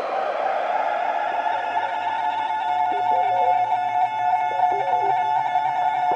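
Beatless breakdown of a tekno/acid track: held synthesizer tones over a low drone. From about three seconds in, short blipping synth notes come and go.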